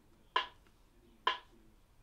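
Metronome clicking at 65 beats per minute: two short, sharp clicks a little under a second apart.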